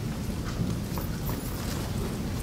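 Hall ambience: a steady low hum with a few faint scattered taps and rustles of pens and paper from many people writing at tables.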